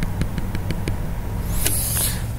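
A run of quick, faint ticks, about six in under a second, from a stylus tapping out a dashed line on a tablet screen, over a steady low background hum. A short hiss follows near the end.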